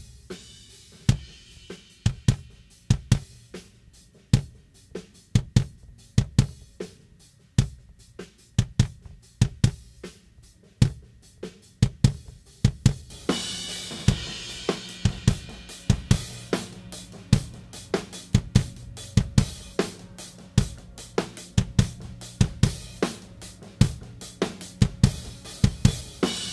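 Multitrack recording of a live drum kit played back: a steady beat of kick drum, snare and hi-hat, with cymbals coming in louder about halfway through. The kick's inside and outside mics are heard first without and later with a 38-sample delay that time-aligns the kick-in mic to the kick-out mic.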